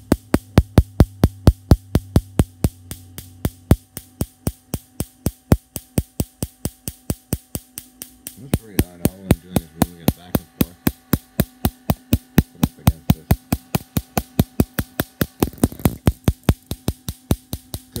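Electric spark cracking in an even train, about five sharp clicks a second, over a steady low hum.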